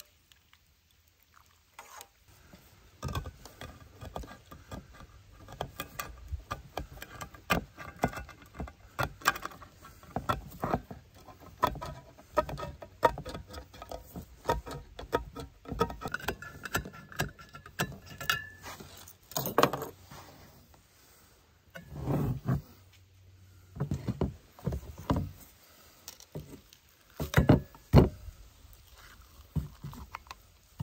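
Small pocket can opener working around the rim of a steel can, a long run of quick, repeated clicking cuts. Near the end, a few louder metal knocks and clanks as the can and a steel skillet and spoon are handled.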